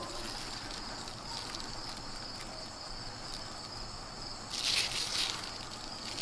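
Steady high-pitched chorus of late-summer insects, with a brief rustle of bean leaves and vines being handled near the end.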